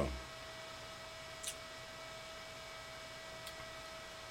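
Steady electrical hum with a high steady whine over it, and two faint ticks: one about a second and a half in, another near the end.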